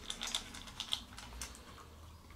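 A puppy eating dry kibble from a stainless steel bowl: a quick run of crisp crunches and clicks in the first second, fainter after that.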